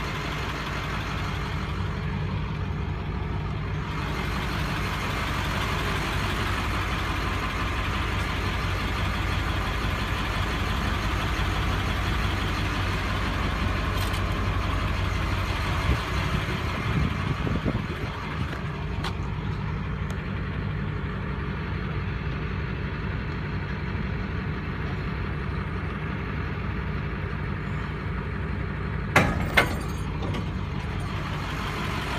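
Diesel engine of an International 4700-series tow truck running steadily while the hydraulic wheel lift raises a truck. Two sharp knocks come near the end.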